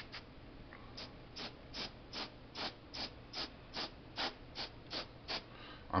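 Paasche H airbrush spraying in a rapid string of short, even puffs of hiss, about two or three a second, as the trigger is tapped. The puffs begin about a second in and stop just before the end.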